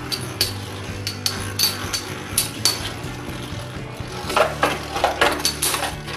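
Two Scythe Kronos T125EDS Beyblade spinning tops, metal wheels, whirling in a plastic bowl stadium and clinking against each other again and again, with a quick run of harder knocks about four to five seconds in.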